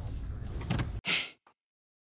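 Film soundtrack of a dark vehicle interior: a steady low rumble, then a sudden loud noise burst about a second in, after which the sound cuts off abruptly.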